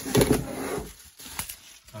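Clear acrylic display stand being handled, its protective plastic film rustling and crackling for about the first second, then one light sharp click.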